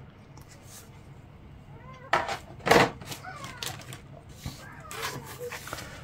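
Grey plastic model-kit sprues being handled and swapped, with two louder rattling knocks about two and three seconds in and smaller clicks. Faint, short wavering calls come in between.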